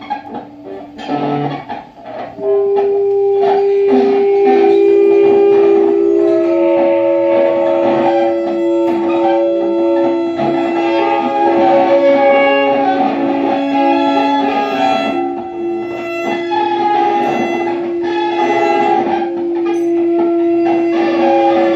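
Free improvised music on saxophones, violin and electric guitar: sparse plucked guitar notes and clicks for the first couple of seconds, then long held notes overlapping into a sustained, dense chord.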